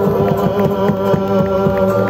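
Live folk band music: an accordion holding chords over strummed guitars, with regular percussion strikes.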